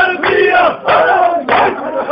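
A crowd of voices chanting a tesbiha, a collective devotional praise chant, loudly and together in short repeated phrases, with voices overlapping.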